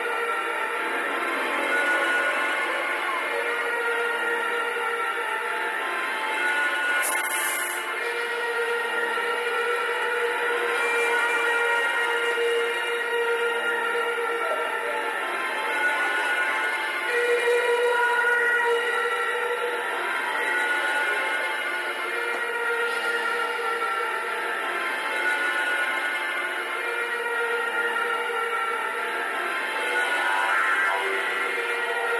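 Live instrumental music of long, overlapping droning tones from an electric bass played through effects pedals, recorded straight from the mixing console, with no deep bass. A brief hiss comes about seven seconds in.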